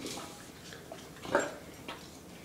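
Two large mastiff-type dogs scuffling in play, with one short, loud dog noise a little past halfway.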